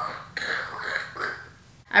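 A woman's mouth-made, wordless imitation of a metal spoon scraping against metal, the sound she cannot stand: a short, hissing, unpitched noise of about a second that then trails off.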